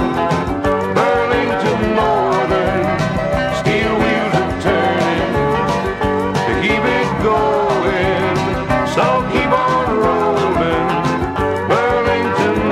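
Country-pop song playing from a 7-inch 45 rpm vinyl single: a full band with a steady beat.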